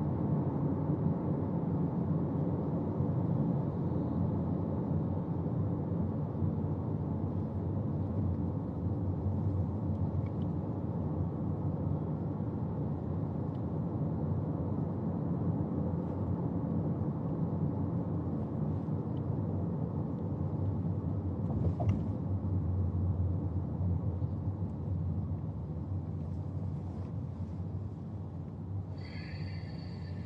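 Steady low rumble of car cabin road and engine noise while riding in a moving car. There is a faint click about two thirds of the way in and a short high-pitched sound near the end.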